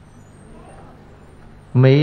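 A pause in a man's talk with only a faint steady background hum, then his voice starts again near the end.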